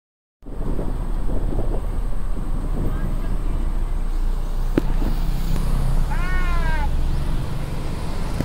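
A steady low rumble, with a single sharp click just before five seconds in and one short call that falls in pitch about six seconds in.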